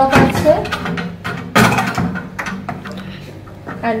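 Wooden clothes hangers clacking against each other and the wardrobe rail as they are handled, with a few knocks from the wooden wardrobe door; the loudest knock comes about a second and a half in.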